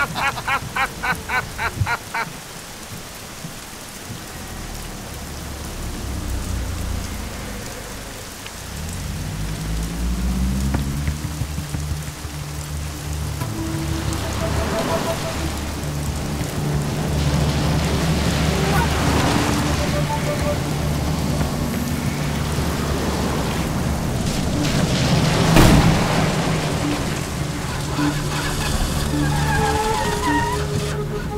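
Heavy rain pouring steadily, with a man's rhythmic laughter in the first two seconds. Low sustained music notes swell in from about nine seconds. A thunderclap near the end is the loudest moment.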